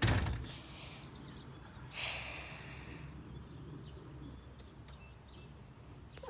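A door bangs shut once, a sharp knock with a low thud, followed about two seconds later by a brief rustling scrape, over faint outdoor background.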